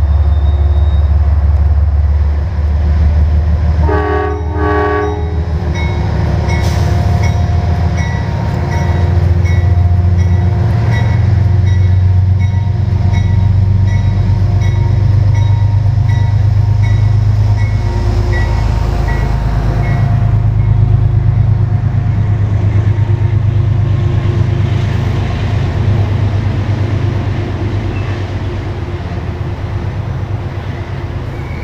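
Passenger trains moving through a station with a heavy, steady rumble. A train horn blows briefly about four seconds in, then a locomotive bell rings steadily, about two strokes a second, for around ten seconds.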